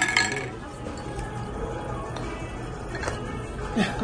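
A ceramic soup spoon clinks against a porcelain soup bowl once, right at the start, over background music and the murmur of voices in the dining room.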